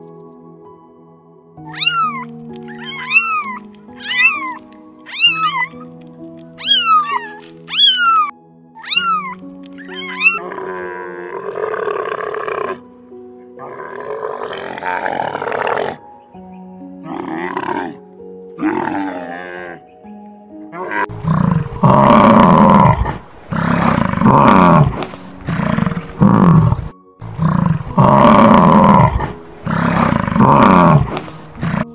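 Soft background music with animal calls laid over it. First comes a run of short calls that fall sharply in pitch, about one a second. Then come rough grunting calls, and in the last third loud, deep roaring calls repeated every second or two.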